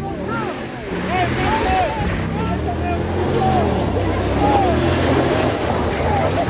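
Pickup truck engine revving, its pitch rising and falling as the truck drives around on loose dirt, with people whooping in the background.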